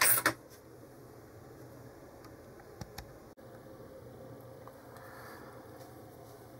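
A short burst of noise right at the start, then quiet room tone with a couple of faint clicks near the middle.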